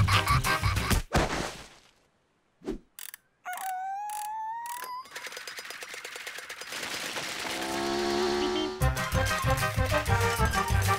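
Cartoon soundtrack: the music cuts off with a sharp hit about a second in, then near silence broken by a single thump. A rising whistling sound effect over quick clicks follows, then a swelling noise that grows louder until upbeat music starts again near the end.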